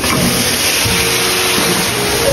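Stone roller mill running, its heavy stone wheel rolling over a bed of dried red chilies to grind them into chili flakes: a loud, steady grinding noise with a low rumble.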